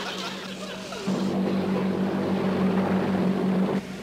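PT boat engine running at speed, a steady drone that grows louder about a second in, as the boat runs under remote control with no crew aboard.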